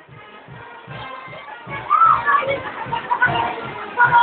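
Carnival street-band music with a steady bass-drum beat, a little over two beats a second, and voices calling out over it, getting louder about halfway through.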